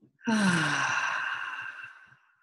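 A woman's long, audible sigh, her voice falling in pitch, starting about a quarter second in. A steady high ringing tone sounds with it and lingers a little longer before fading.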